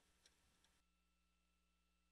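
Near silence on the broadcast audio: a faint hiss that cuts off under a second in, then only a very faint steady hum.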